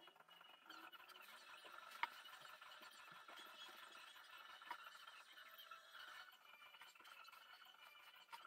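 Near silence: faint room tone with a steady faint whine, broken by one sharp click about two seconds in and a softer click near five seconds.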